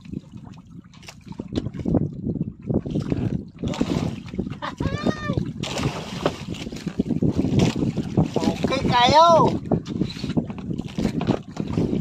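Wind and choppy water washing against the hull of a small wooden outrigger boat at sea, with wind buffeting the microphone. A man's voice rises in short calls about five seconds in and again around nine seconds.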